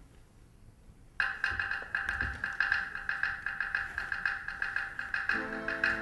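Russian folk orchestra music starting suddenly about a second in: domras playing a rapid tremolo on one high held note, with lower plucked strings coming in under it near the end.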